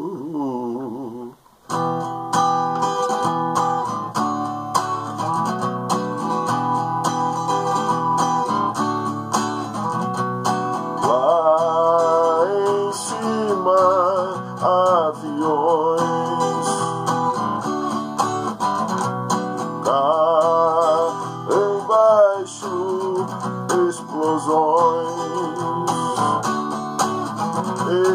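Acoustic guitar strummed and picked, with a man's wordless singing over it in stretches. The music drops out briefly about a second in, then picks up again.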